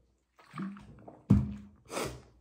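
Gulping a drink from a large plastic jug, a sharp thunk about a second and a half in as the jug is set down on the table, then a loud breath at the end.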